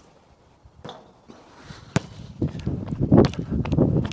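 A basketball shot hits the hoop with a single sharp clank about two seconds in. Footsteps on the hard court follow as the missed ball is chased, with the ball bouncing.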